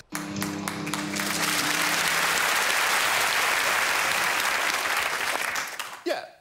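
Studio audience applauding: the clapping builds over the first couple of seconds, holds, and dies away near the end. A steady low hum sounds under it in the first two seconds.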